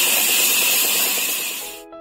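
A loud steady hiss that cuts off suddenly near the end, giving way to light music with plucked notes.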